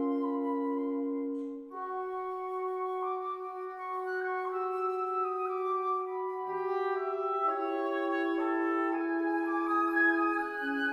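Woodwind quintet (flute, oboe, clarinet, bassoon and horn) playing classical chamber music: several held notes sound together and move to new notes every second or two, with a short dip in level about two seconds in.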